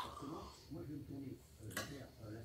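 A knife and fork clicking and scraping on a plate while a fish steak is cut: one sharp click at the start and a brief scrape near the end. A faint voice murmurs underneath.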